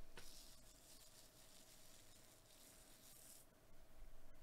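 Near silence: faint room tone with a low steady hum, a soft click right at the start, then a faint high hiss for about three seconds.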